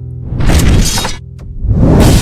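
The tail of a held musical chord, then a loud crashing transition sound effect about a third of a second in that lasts under a second. Near the end a second swell rises into rock music with drums.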